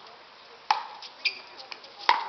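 Pickleball paddles striking the hard plastic ball in a rally: one sharp, ringing pock about two-thirds of a second in, then a couple of fainter pocks.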